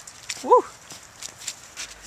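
Footsteps crunching on a thin layer of snow and slush, a string of irregular sharp steps. A short rising-falling "woo" shout comes about half a second in.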